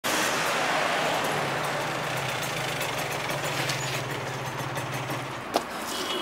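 Motorcycle engine running with a steady low hum under a broad wash of noise; the hum stops near the end and a single sharp click follows.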